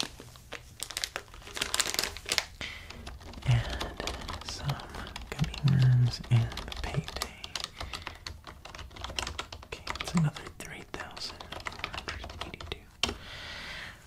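Rapid, irregular tapping and clicking with light crinkling, as plastic candy packaging is handled close to the microphone.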